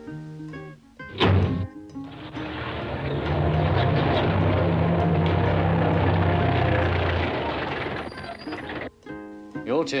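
A sharp bang about a second in, then a van's engine running steadily for about seven seconds before cutting off suddenly near the end.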